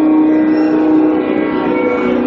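Carnatic concert music in raga Saranga: voice and violin holding one long, steady note, which steps down to a lower note near the end.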